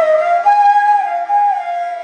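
Bansuri (bamboo transverse flute) playing a single sustained phrase in Raga Pooriya Kalyan: the note glides up a step, holds, then slides back down near the end, over a faint steady drone.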